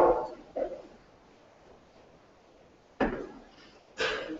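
A man's spoken phrase trailing off, then a few seconds of quiet room tone. Near the end come two short, sudden sounds about a second apart.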